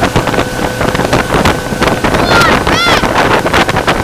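Motorboat running at speed under tow, its engine, rushing wake water and wind buffeting the microphone blending into a loud, steady noise. About two seconds in, a person's voice gives two short calls that rise and fall in pitch.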